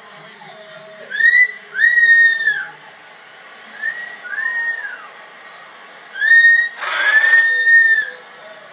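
Umbrella cockatoo giving loud whistled calls, each rising and then falling in pitch, in three pairs; the last call is held longest. Low TV football commentary runs underneath.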